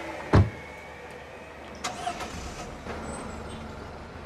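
A car door shuts with a single loud thump about a third of a second in, then a vehicle engine runs with a low, steady rumble as vehicles pull away.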